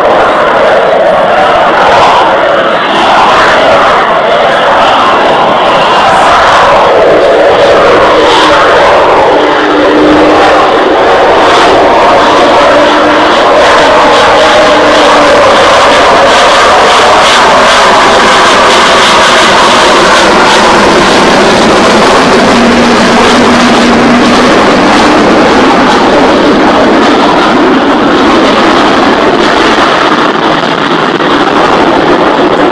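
F-35A fighter's single turbofan jet engine running loud and continuous as the jet makes a slow, nose-high pass overhead, the sound steady with slow shifts in pitch.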